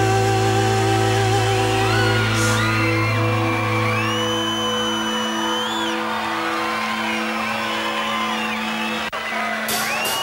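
Live rock band holding a long sustained chord, with high gliding whoops from the crowd over it; the bass end drops away about halfway through.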